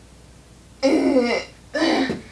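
A young woman's voice making two short wordless vocal sounds, one about a second in and a shorter one near the end, with strain while she bends back in the splits.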